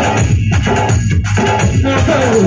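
Instrumental interlude of a Sambalpuri song played by a live stage band: electric guitar and keyboard with drums, no singing.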